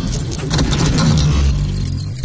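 Intro sound effect: metallic clinking and clattering over a deep rumble. The clinks thin out near the end as the rumble swells.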